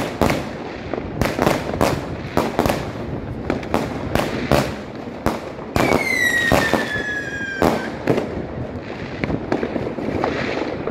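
Fireworks going off in a rapid run of sharp bangs and cracks. About six seconds in, a firework whistle slides slowly down in pitch for nearly two seconds.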